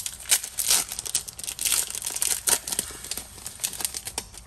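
Foil wrapper of a Pokémon trading card booster pack being torn open and crinkled by hand: a run of irregular, sharp crackles.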